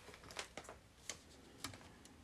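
Faint handling of paper on a tabletop: a few light taps and rustles as paper cutouts are pressed onto a glue-book page and paper scraps are picked up.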